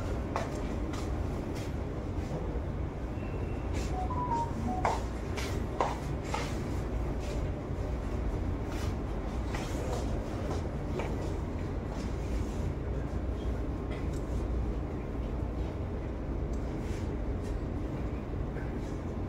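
Steady low rumble of room background noise, with a few light clicks and knocks about five seconds in.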